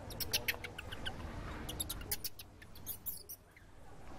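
A series of short, high-pitched animal squeaks in quick succession, in two runs during the first three seconds or so.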